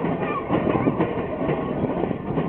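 Heavyweight passenger cars rolling past on the track, their wheels clacking and knocking over the rails in an uneven run of strikes over a steady rumble.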